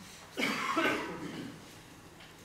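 A single person's cough, starting sharply about half a second in and fading within a second.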